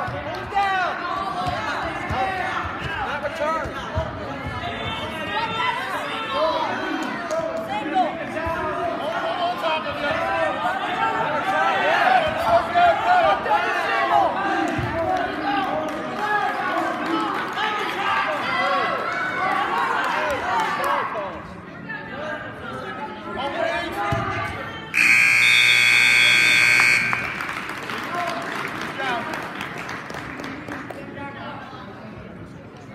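Spectators in a gym shouting and cheering over one another at a high school wrestling match. About 25 s in, a loud electronic scoreboard buzzer sounds steadily for about two seconds, marking the end of the period.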